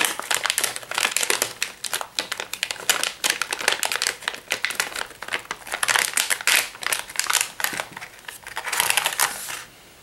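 Silver metallized anti-static bag crinkling and crackling steadily as it is opened by hand and a circuit board is pulled out, easing off near the end.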